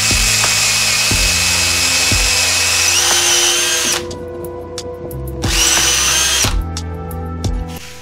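Cordless drill boring a small access hole through a wooden block: the motor whines steadily for about four seconds, stepping up slightly in pitch near the end before it stops, then runs again for about a second. Background music with a steady beat plays underneath.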